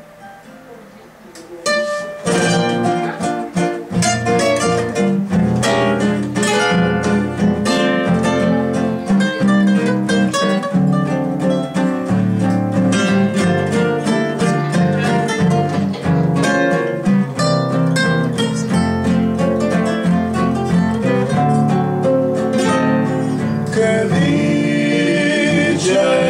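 Three acoustic guitars playing an instrumental introduction together, a picked melody over plucked accompaniment, starting about two seconds in after a brief quiet moment.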